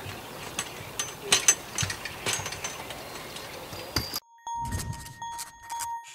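Outdoor noise with a steady low rumble and scattered clicks. It cuts off suddenly about four seconds in, and a short intro jingle takes over: a ringing, bell-like tone over a few low beats.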